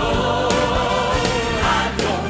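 Praise and worship music: a choir singing long held notes over a band with a drum beat.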